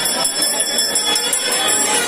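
Metal bells ringing continuously in a steady jangle, as rung during a Hindu temple puja.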